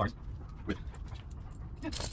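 A dog right at the microphone making three short sounds, about 0.7 s and then a second apart.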